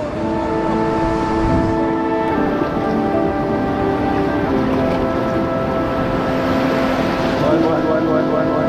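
Background music of slow, sustained chords that change every second or two, over the wash of surf.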